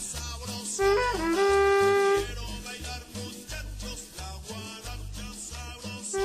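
Trumpet playing a short off-beat figure, two quick notes into a held note about a second long, over a salsa-style guaracha backing track with pulsing bass and percussion.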